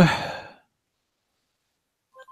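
A man's hesitant "äh" trailing off into a breathy exhale, then dead silence for about a second and a half.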